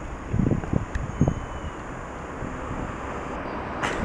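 Outdoor street background: a steady hum of traffic, with a few short low rumbles of wind buffeting the camera's microphone in the first second and a half.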